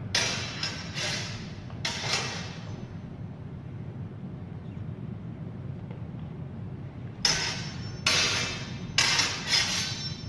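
Practice longswords clashing in sparring. A quick run of about four blade strikes comes in the first two seconds, a pause follows, then another run of about five strikes comes in the last three seconds, each strike with a short ring.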